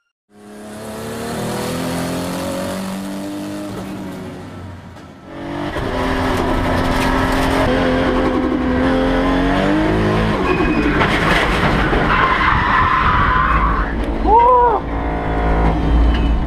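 A race car engine revs, climbing steadily in pitch for several seconds and then dropping sharply at a gear change about ten seconds in. Tyres squeal and skid near the end.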